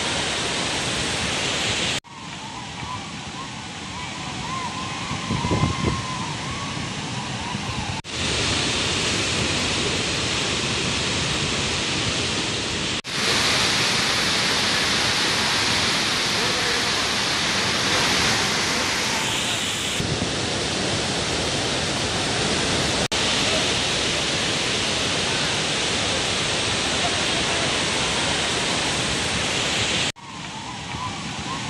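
Water released through the open crest gates of the Hemavathi dam's full reservoir, rushing down the spillway in a loud, steady roar of white water. The sound breaks off abruptly between shots several times, and is quieter for several seconds near the start.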